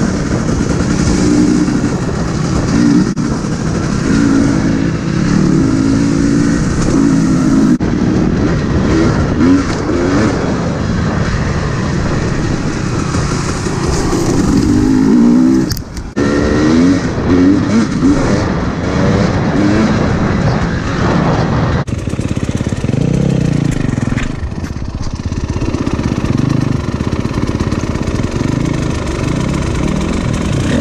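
Single-cylinder four-stroke dirt bike engine, a new 2021 Husqvarna FX350 on its break-in ride, revving up and down as it is ridden, with the engine note rising and falling all the way through. About halfway through, the sound drops briefly, then comes back.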